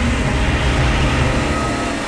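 A loud, sudden rushing noise with a deep rumble, a dramatic sound effect laid under a spooky slide transition. It peaks around the middle and begins to fade near the end.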